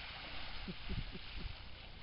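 Water splashing at the surface as snook feed on baitfish, a hissy splash that fades out about halfway through, over a steady low rumble of wind on the microphone.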